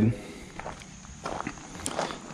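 Footsteps on gravel: a few faint steps.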